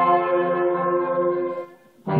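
School concert band holding a long sustained chord that fades and cuts off about one and a half seconds in. After a brief pause the band comes back in loudly at the very end.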